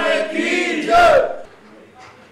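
Men's voices loudly shouting a devotional chant, one drawn-out call that stops about a second and a quarter in.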